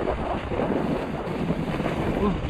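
Wind rushing over the camera microphone as a snowboard slides down a snow slope, its base and edges scraping over the snow: a steady rushing noise.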